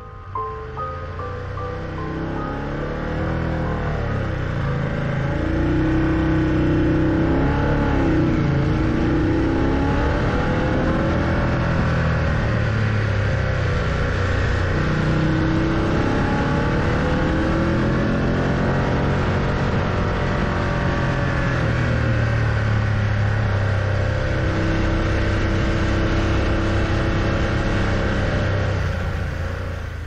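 Motorcycle engine climbing a steep mountain road, its revs rising and falling through the hairpin bends, over a steady rush of wind and road noise; a few mallet-music notes fade out at the start. It grows louder over the first several seconds.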